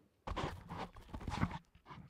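Footsteps on a hard stage floor: a short run of clattering steps starting just after the beginning and dying away near the end.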